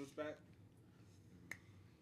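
A man's voice trails off at the start, then near silence with one short, sharp click about a second and a half in.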